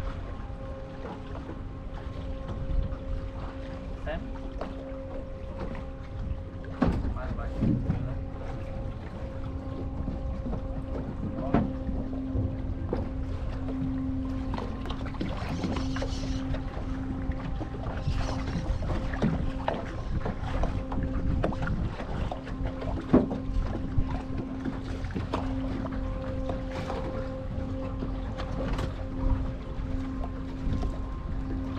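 Boat engine running with a steady hum that swells and fades, over low rumbling wind noise on the microphone, with a few sharp knocks.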